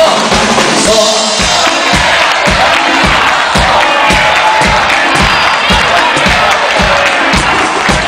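Live band music over a PA, driven by a steady kick-drum beat a little over two beats a second, with a large crowd's noise mixed in.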